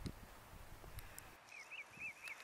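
Quiet outdoor ambience. From about halfway through, a small bird gives a quick run of faint, repeated chirps, about six a second.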